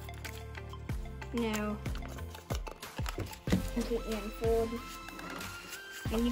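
Background music with a regular beat and a voice in it.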